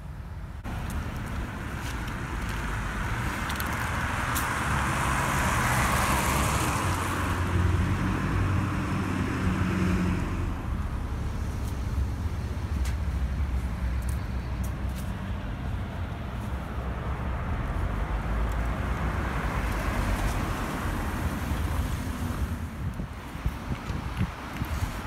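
Road traffic on a town street: a steady rumble of cars, with one vehicle passing that swells and fades about three to ten seconds in, and a smaller pass later.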